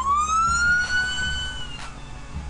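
Emergency-vehicle siren wail rising steeply in pitch, holding high, then starting to fall near the end, over background music with a steady beat.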